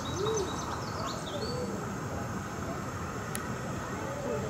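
Outdoor bird calls: a few short, low hooting notes, with a run of quick high chirps from another bird in the first second and a half, over a steady background hiss.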